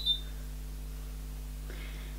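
Hair straighteners beeping that they have reached temperature: a short, high double beep right at the start. After it comes a steady low hum.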